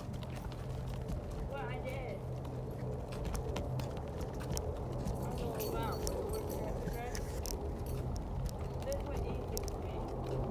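Wheelchair being pushed along a sidewalk with footsteps: irregular clicks and knocks over a steady low hum, with faint voices now and then.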